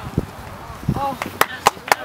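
A handful of sharp, very short clicks in quick succession in the second half, over faint distant voices.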